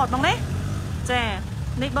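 A person speaking in short phrases over a steady low vehicle rumble.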